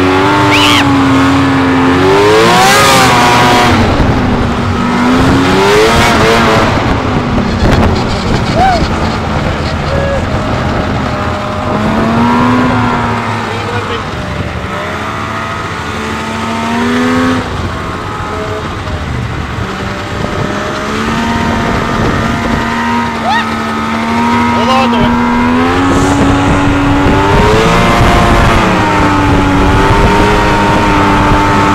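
Snowmobile engine running under way, its pitch rising and falling again and again as the throttle opens and eases, with a steadier, lower stretch about two-thirds of the way through.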